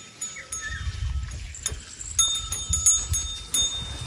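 Small metal bell hanging from a bull's decorative neck ornament jingling and ringing as the bull moves its head, with sharp clicks and low rumbling alongside. The ringing starts about two seconds in and is struck several times.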